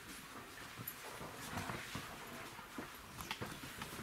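Shuffling footsteps, clothing rustle and small knocks as a group of people moves through a small room.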